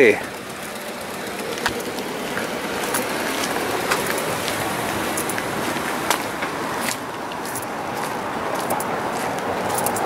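Steady outdoor background noise with indistinct voices in it, and a few faint clicks.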